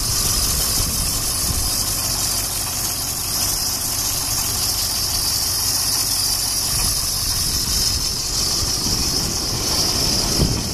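Diesel engine of a 2002 International school bus idling steadily, heard close up at the open engine compartment.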